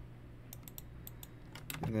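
Computer keyboard being typed on: a quick run of key clicks starting about half a second in.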